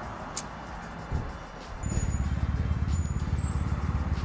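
A motor vehicle's engine running close by, a low, evenly pulsing rumble that starts about two seconds in. Two faint, short high beeps sound over it.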